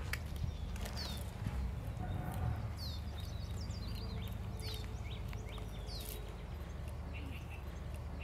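Birds calling outdoors: short, high chirps sweeping downward every second or so, then a quick run of short repeated notes near the end, over a steady low rumble.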